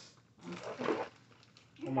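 A brief rustle and knock of plastic office-chair parts being handled during assembly, about half a second in; a voice starts just at the end.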